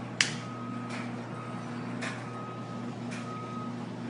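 An electronic beep repeating about once a second, each beep about half a second long, over a low steady hum, with one sharp knock near the start.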